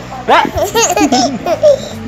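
A baby laughing in a string of short, high-pitched bursts, starting about a third of a second in and lasting about a second and a half.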